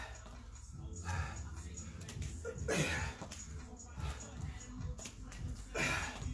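A person breathing hard while doing squats and side kicks, with a few sharp exhales, the loudest near the middle and at the end.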